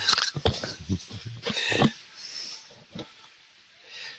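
A man laughing in short breathy bursts for about the first two seconds, then quieter room noise.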